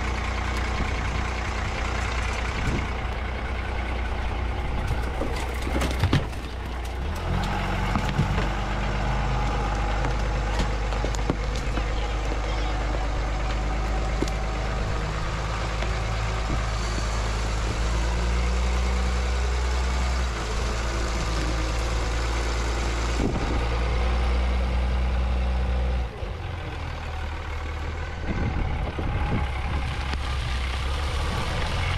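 A large swamp buggy's engine running as the buggy drives over marshy ground, a steady low note that steps up or down a few times.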